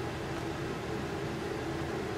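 Steady room tone: an even background hiss with a faint low hum, and no distinct event.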